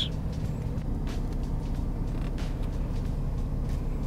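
Mercedes-Benz C300 (W204) idling, heard from inside the cabin as a steady low hum.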